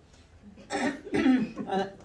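A person coughing and clearing their throat: a few short coughs starting about two-thirds of a second in.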